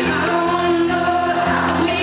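Live pop-rock band performance heard in a concert hall: acoustic and electric guitars playing with a woman singing over them, at a steady loud level.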